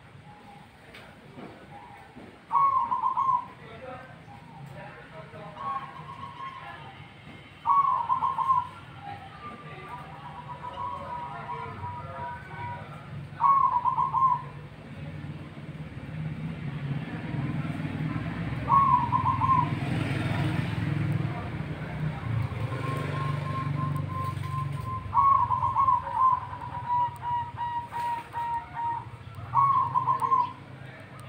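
Zebra dove (perkutut) cooing: six short trilled coos come about every five seconds, several trailing into a run of softer, quick even notes. A low rumble swells in the background through the middle.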